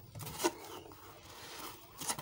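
Faint rustling and scraping handling noise, with a few light ticks early and a sharper tick about half a second in.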